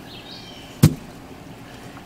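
A wooden-framed gravel sifting screen is flipped over and slapped down once onto a gravel-covered table, one sharp thump that turns out the sifted gravel for a look at its centre.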